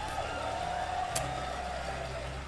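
A young girl's singing voice holding one long note that wavers slightly, the closing note of her song, with a short click a little past halfway.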